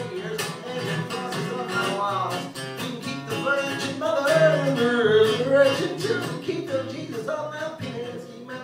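Acoustic guitar strummed in a steady rhythm, accompanying singing of a folk song's chorus; the singing swells about four to six seconds in.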